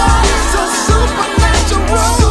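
Christian hip hop track: deep kick drums that drop in pitch, about two a second, over a sustained deep bass, with a wavering melodic line above.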